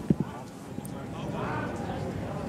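Background voices of people talking at a distance, with two or three quick, sharp knocks right at the start.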